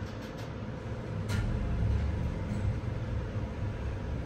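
Elevator car travelling downward: a steady low rumble from the moving cab with a faint steady motor whine, and a single click a little over a second in.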